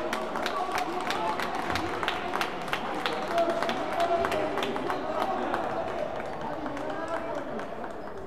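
Spectators' voices in a sports hall mixed with repeated sharp hand claps, several a second, which stop near the end.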